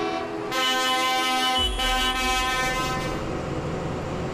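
Tractor horn sounding one long steady blast of about two and a half seconds, starting about half a second in, with a low engine rumble joining partway through.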